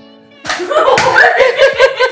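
A slap as the swung plastic water bottle strikes about half a second in, followed by loud, rapid laughter over background music.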